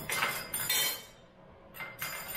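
Kitchen utensils clinking and clattering for about a second: a metal microplane grater and a small glass dish being handled and set down on the countertop, followed by one short clink near the end.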